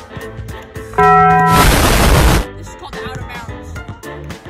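Background music, cut into about a second in by a very loud edited-in sound effect: a held buzzer-like tone for about half a second, then an explosion-like burst of noise lasting about a second that stops abruptly.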